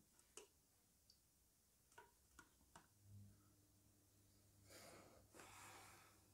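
Near silence: room tone with a few faint clicks in the first three seconds and two soft rustles near the end.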